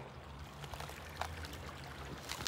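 Small woodland stream trickling faintly.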